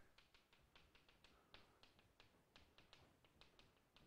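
Faint chalk tapping on a blackboard as a formula is written: short, irregular clicks, several a second.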